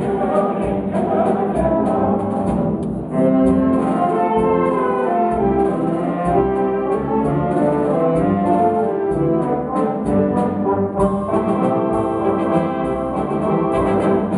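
Wind band of brass, clarinets and saxophones over tuba playing a waltz arrangement in sustained chords and melody, with a louder new phrase starting about three seconds in.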